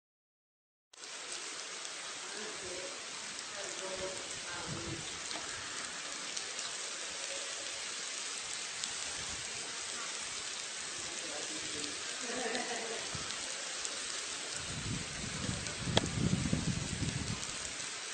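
Amplified ant colony: a steady fine crackling hiss, much like light rain, starting about a second in. Low rumbling comes in near the end, with one sharp click.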